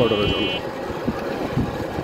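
Road noise and traffic rumble from riding in an open three-wheeler on a paved road, with a short high-pitched tone lasting about half a second at the very start.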